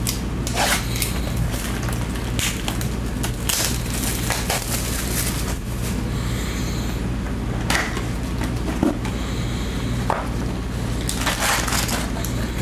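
Plastic shrink wrap being torn and crinkled off a sealed trading-card hobby box, then the box opened. There are irregular crackling rustles throughout.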